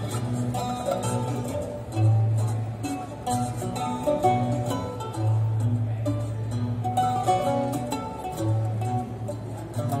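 Plucked-string trio of classical mandolin, mandola contralto and liuto cantabile playing together: long-held low notes lasting a second or more sound beneath a picked higher melody.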